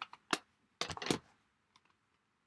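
Clear plastic stamp-set case being picked up and handled, giving one sharp click about a third of a second in and a short run of clicks and taps around a second in.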